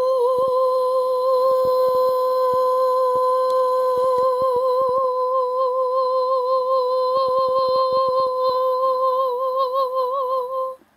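A person humming one long, high held note that wavers slightly in pitch, without a break.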